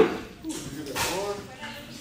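Low voices speaking in the background, with a loud, brief noise burst right at the start.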